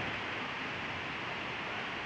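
Steady rushing noise of an ash-laden river flowing through steaming volcanic deposits, even and unbroken.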